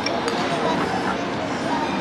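Restaurant ambience: a murmur of other diners' voices over steady room noise, with a light clink of a spoon on a plate right at the start.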